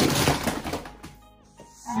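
Dozens of plastic action figures swept out of a toy wrestling ring by a hand, clattering against each other and falling onto the ring mat and the floor. A loud crash at the start breaks into a rattle of small knocks that dies away within about a second.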